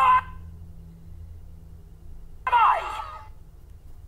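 Two short cries whose pitch slides, one right at the start and a longer falling one a little past halfway, over a steady low hum.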